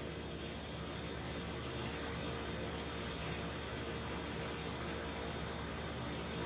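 Steady noise of an impact-of-jet test rig running: its water pump hums and the jet of water sprays and splashes inside the vane chamber, with no sudden events.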